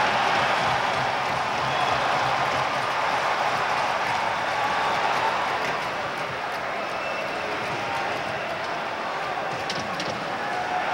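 Hockey arena crowd cheering steadily during a fight on the ice, loudest at the start and easing slightly over the second half.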